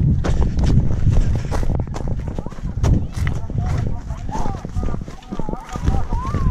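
Brisk footsteps crunching over dry, stony ground and scrub, about two to three steps a second, as someone hurries across a hillside.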